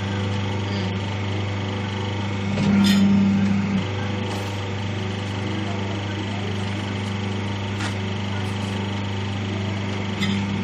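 Paper plate making machine running with a steady electric-motor hum. The hum swells louder for about a second, around two and a half seconds in, as the press cycles. A couple of faint clicks come from the dies.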